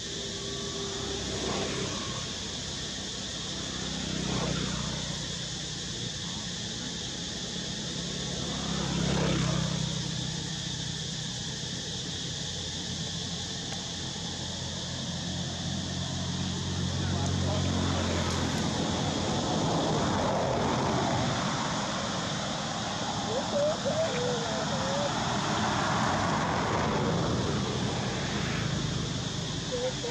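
Outdoor background with a low engine hum that swells and fades several times, like vehicles passing, over a steady hiss. Brief high squeaks come in near the later part.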